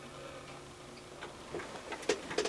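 The last chord of acoustic guitars dying away, followed by a few faint clicks and light knocks.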